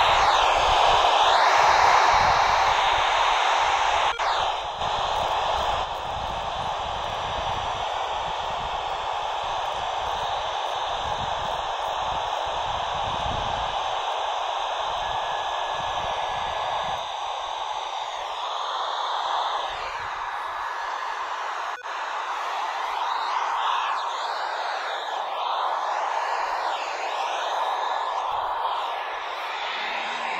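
FM hiss from a Kenwood TH-D72A handheld radio with its squelch open on the SO-50 satellite downlink. The hiss comes on suddenly and is loudest for the first few seconds. Faint, wavering traces of signal are buried in the noise in the second half.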